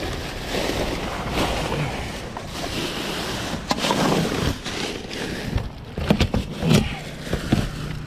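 Plastic trash bags and paper rustling and crinkling as gloved hands dig through the contents of a steel dumpster, over a steady low rumble. A cluster of sharper crackles and knocks comes about three quarters of the way through.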